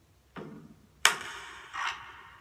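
Three spaced percussion hits from a film trailer's soundtrack, each dying away quickly, the loudest about a second in.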